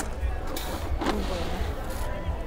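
A metal scoop digging into an open sack of loose rice, with two brief noisy strokes about half a second and one second in. Faint voices and a low rumble run underneath.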